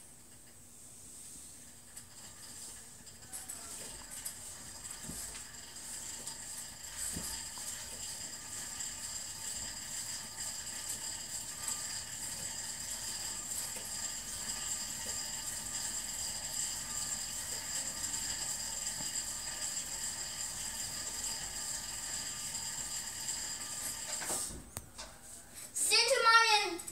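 Indoor spin bike's flywheel whirring as it is pedalled: a steady, high whir that builds up over the first few seconds, holds even, and dies away near the end.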